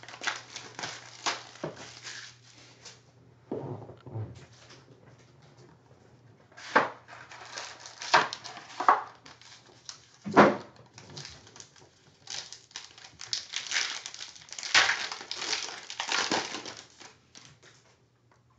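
Plastic shrink wrap and foil card-pack wrappers being torn open and crinkled by hand, in irregular bursts of crackling; the densest, loudest crinkling comes in the last few seconds as a foil pack is pulled apart.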